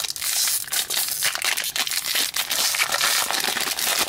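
Foil Disney Lorcana booster pack crinkling and tearing as it is ripped open by hand: a dense, continuous run of crackles.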